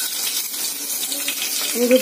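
Whole green chillies sizzling in hot oil in a stainless steel kadai, a steady hiss.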